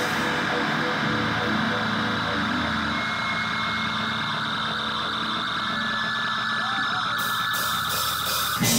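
Electric guitar feedback and amplifier drone in a live rock band: loud, held, wavering tones with no drum beat, a higher sustained whine joining about three seconds in.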